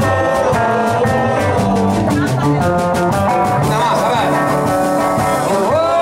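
Live blues band playing: electric guitar over upright double bass and drums with a steady beat. Near the end a man's voice comes in singing.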